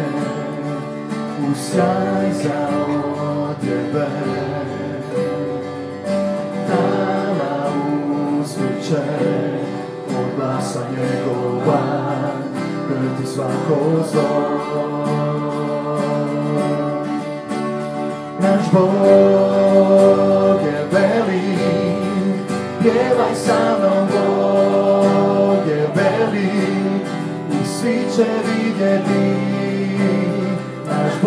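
Live church worship band playing a song: acoustic guitar, keyboard and drums, with singing. The music grows fuller and louder a little past halfway.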